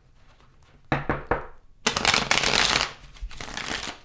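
A deck of tarot cards being shuffled by hand: a few short quick shuffle strokes about a second in, then a longer continuous run of shuffling lasting about a second that tapers off.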